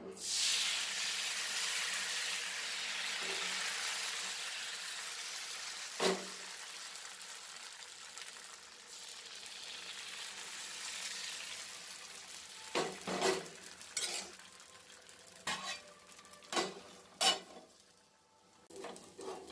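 Thin neer dosa rice batter sizzling loudly as it hits a hot oiled pan. The hiss starts at once and slowly dies away over about twelve seconds as the dosa sets. There is a single sharp knock about six seconds in, and several sharp clinks and knocks in the last few seconds.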